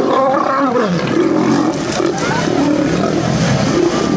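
Several male lions fighting, growling and roaring over one another without a break, the growls rising and falling in pitch.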